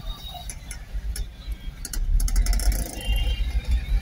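Low, steady rumble of a car driving slowly, heard from inside the cabin, with a short run of light clicks or rattles about halfway through.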